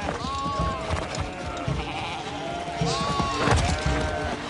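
A flock of sheep bleating: several overlapping drawn-out bleats, in two groups, one near the start and one near the end.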